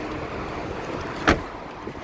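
Rear passenger door of a Mercedes-Benz C63 AMG estate shut once, a single sharp thud a little past halfway.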